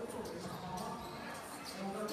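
A basketball bouncing a few times at an uneven pace on a hardwood gym floor, over the murmur of a crowd in a large hall.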